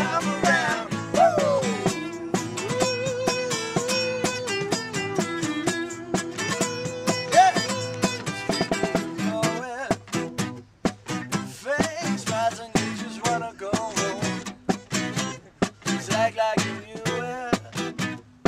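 Live acoustic band performance: acoustic guitar strummed under a long, wavering sung melody for the first nine seconds or so, after which the guitar strumming carries on in a choppy, stop-start rhythm.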